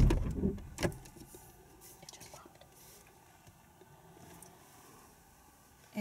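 Automatic gear shift lever of a 2011 Jeep Liberty being moved into neutral: a loud clunk at the start and a second, lighter click a little under a second later, then only faint background hiss.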